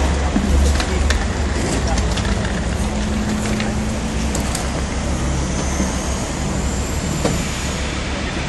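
Steady low rumble of city street traffic, with a few sharp clicks and knocks in the first half as plastic crates are handled.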